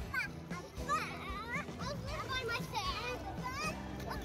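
Young children's high-pitched excited voices, calling out and shrieking in play rather than speaking clear words, with music playing underneath.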